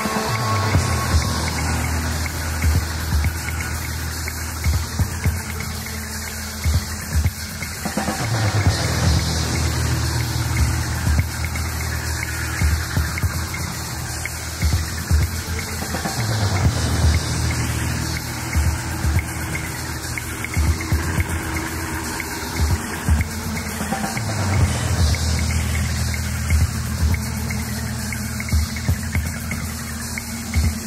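Band playing live: a loud repeating bass line under dense drum hits, with falling slides in a pattern that starts over about every eight seconds.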